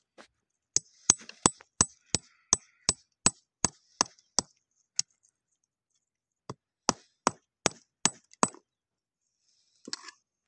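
Sharp hard knocks of a small stone tapped against rock, evenly at about three a second: a run of about a dozen, a pause of over a second, then about six more.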